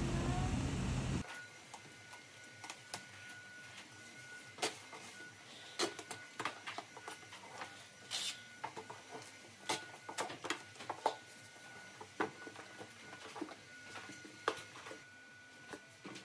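A loud, steady noise cuts off suddenly about a second in. After that a cardboard box is handled and sealed, with scattered light taps and knocks of cardboard, and about eight seconds in a short, sharp screech of packing tape pulled off a handheld tape dispenser.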